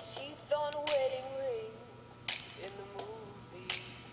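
A girl's voice singing a few drawn-out, wavering notes softly to herself, in two short phrases. Three light clicks from the plastic hook and rubber bands on the loom sound between them.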